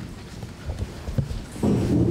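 A few irregular knocks and bumps close to a table microphone, from handling at the witness table, then a louder sound starting about one and a half seconds in as the witness begins.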